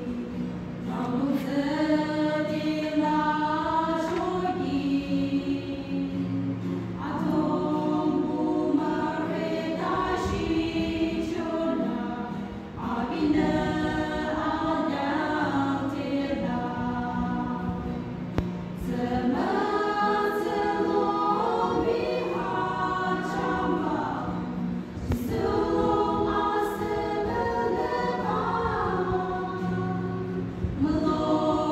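A small women's choir singing a hymn together, in phrases with brief breaths between them.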